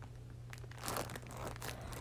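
Water-filled plastic zip bag crinkling faintly as it is pressed and handled to push the last air out, mostly in the second half.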